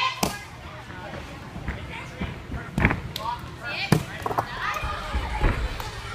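A gymnast's hands and feet thudding onto the spring floor and mats while tumbling: about four sharp impacts, roughly a second apart, with voices in a large gym.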